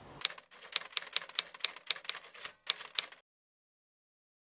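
Typewriter keystroke sound effect: a run of sharp key clicks, about four a second, that stops suddenly a little over three seconds in.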